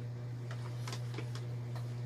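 Light, irregular clicks of small plastic toy pieces being handled and set down on a tile floor, over a steady low hum.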